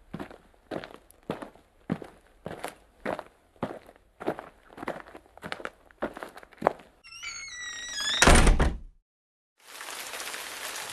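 Footsteps walking at about two steps a second, then a door creaking on its hinges and shutting with a heavy thud. A short dead silence follows, then a steady hiss starts near the end.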